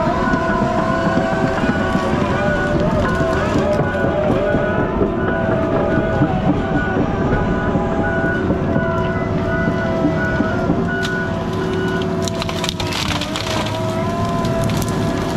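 Heavy logging machine's diesel engine and hydraulics running steadily, with a short high beep repeating about twice a second that stops near the end.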